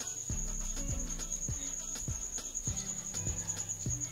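Background music with a quick, steady bass beat, under a continuous high, pulsing trill like a cricket's.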